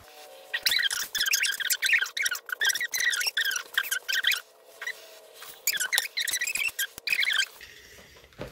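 Steam iron squeaking in quick runs as it is rubbed back and forth over heavy home-decor fabric to fuse fusible fleece to it. There is a long run of squeaks, a pause of about a second, then a shorter run.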